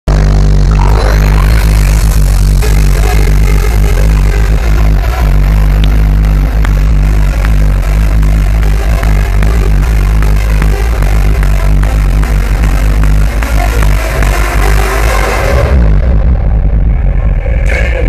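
Loud live hardstyle music from a festival PA, heavy in bass, picked up by a camera microphone in the crowd. About two seconds before the end the treble drops away, leaving mostly bass.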